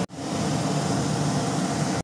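Steady, even rushing noise with no speech, starting just after a sudden cut and stopping abruptly at another.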